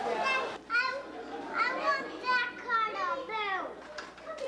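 Young children talking in high voices, with no other sound standing out.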